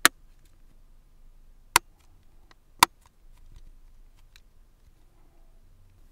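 Plastic battery door of a Nokia Lumia 822 phone snapping into place, seating securely: three sharp clicks, one right at the start, one near two seconds in and another about a second later, followed by a few fainter ticks.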